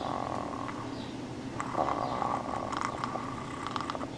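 A man's drawn-out, strained, high-pitched vocal sound held on one pitch. It fades about half a second in and rises again after about a second and a half, with a few small clicks near the end.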